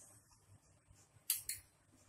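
A steel spoon clinks twice in quick succession, about a second and a half in, as oil is spooned into a non-stick frying pan.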